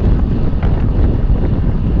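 Wind buffeting a bike-mounted camera's microphone while riding at race speed: a loud, steady rumble with a couple of faint ticks.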